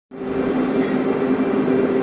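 A steady mechanical hum over an even hiss, with two constant low tones and no change.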